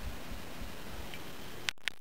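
Steady, faint background hiss of outdoor room tone with a little low rumble; no machine is running. A couple of faint ticks come near the end.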